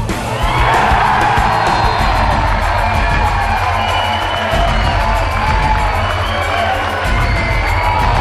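Music with a steady beat, over which a crowd cheers a goal; the cheer swells about half a second in and carries on.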